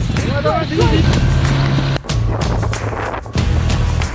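Outboard motor of an inflatable boat running steadily under way, with wind noise on the microphone and water rushing around towed buoys.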